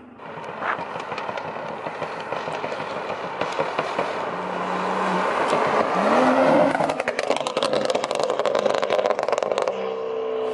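Tuned BMW 340i's turbocharged straight-six (B58) approaching at speed, growing louder to a peak about two-thirds in. It then breaks into a rapid run of exhaust crackles and pops as the car lifts off past the camera.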